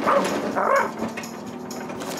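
A cartoon dog's voiced dog noises: two short sounds in the first second, then quiet background.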